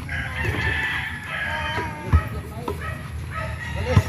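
A rooster crowing, a pitched, wavering call lasting a little over a second at the start. A basketball bounces with dull thuds on the grass, about two seconds in and again near the end.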